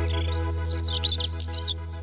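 A cartoon bird sound effect: a quick run of high twittering chirps over a held musical chord. The chord fades toward the end.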